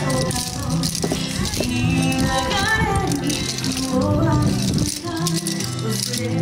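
Yosakoi dance music with wooden naruko clappers clacking in rhythm.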